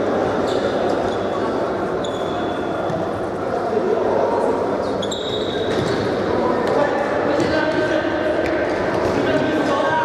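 A futsal ball being kicked and bouncing on a sports-hall floor, under a steady hubbub of players' shouts and voices echoing in the large hall. A few short high squeaks are heard.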